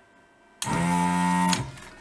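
Electric desoldering gun's built-in vacuum pump switching on with a steady buzz for about a second, sucking molten solder from a through-hole joint, then cutting off.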